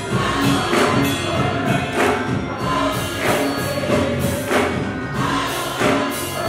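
Gospel choir singing with instrumental accompaniment, a sharp accent marking the beat about every 1.2 seconds.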